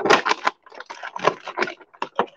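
Clear plastic packaging tray crinkling and crackling as a toy figure is worked free of it: a loud burst at the start, then lighter, irregular crackles.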